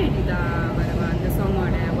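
A person talking over a steady low background rumble.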